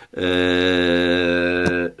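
A man's voice holding one long, level vowel sound for nearly two seconds, a drawn-out hesitation sound between words.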